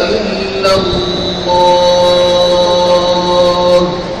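A muezzin's voice over the mosque loudspeakers, finishing the call to prayer on a long, very steady held note. The note stops abruptly just before the end.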